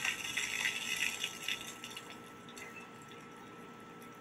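A 16-ounce bottle of RC Cola erupting after Mentos are dropped in: foam fizzing and spraying out of the neck with a crackly hiss that dies away about halfway through.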